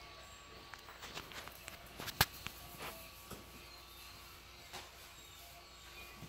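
Bernedoodle puppy's claws clicking and scrabbling on a ceramic tile floor in scattered light taps, with one sharp click about two seconds in.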